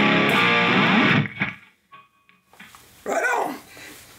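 Electric Telecaster with Bootstrap Pretzel pickups played through a Line 6 Helix, its notes ringing out and dying away about a second and a half in. A short voice-like sound follows near the end.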